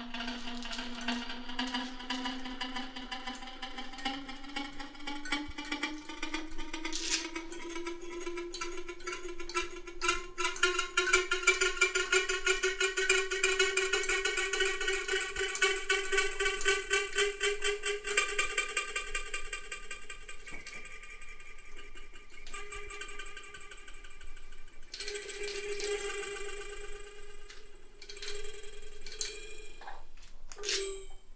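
Electronic drone from a Max/MSP patch, a pitched tone rich in overtones and pulsing rapidly, its pitch gliding slowly upward over the first twenty seconds and growing louder midway. It fades out and then comes back in shorter, choppier pieces near the end, with a few clicks along the way.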